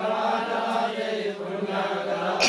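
A group of people chanting a Sanskrit Vedic mantra together in unison, their voices held steady and continuous.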